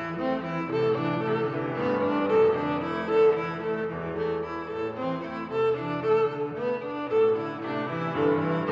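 String music led by cello, with violin, playing held, overlapping notes that change every half second to a second.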